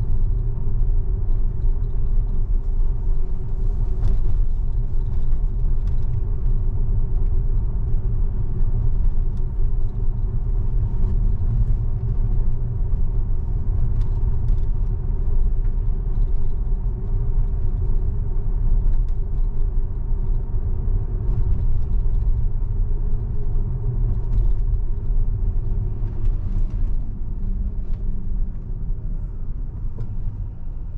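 Tyre and road noise inside the cabin of a Tesla electric car cruising at about 30 mph: a steady low rumble with no engine note. It eases off over the last few seconds as the car slows for an intersection.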